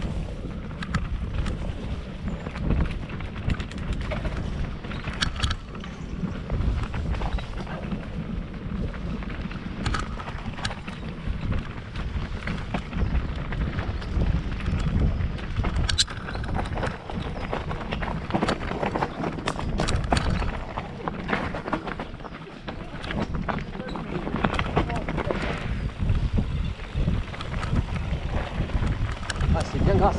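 A mountain bike being ridden down a rough enduro trail. Wind rumbles on the microphone, and the bike gives off irregular knocks and rattles as it goes over the ground.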